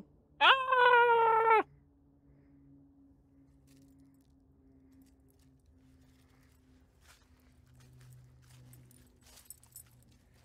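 A loud, drawn-out cat-like wailing cry, held for just over a second near the start and then cut off, followed by faint low hum and light rustling.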